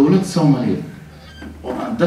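Speech only: a man speaking Somali into a microphone, pausing for about a second in the middle.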